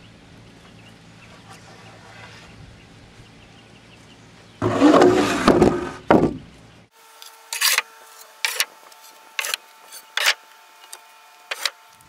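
A long wooden board dragged and set down on a wooden deck: a loud rough scrape lasting about two seconds, midway through. Before it a low steady hum; after it, a run of sharp knocks about once a second over a faint steady tone.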